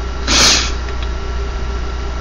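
Steady low hum, with a short hiss about half a second in.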